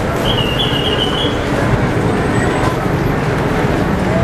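Steady, dense road-traffic noise from a busy street below, mixed with a crowd. A brief high squeal starts about a third of a second in and lasts about a second.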